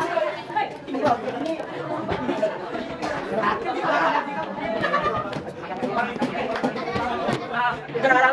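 Indistinct chatter of several teenage students talking over one another in a classroom, with no single voice standing out.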